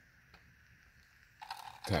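Quiet room tone with a faint click, then a brief rustle of handling noise as the RC buggy is moved, just before speech resumes.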